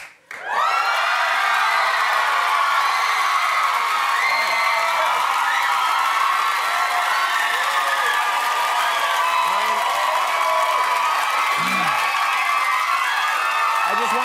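Studio audience cheering and screaming with applause, greeting a guest's entrance: many high-pitched voices overlapping in one loud, steady roar that swells up about half a second in and holds throughout.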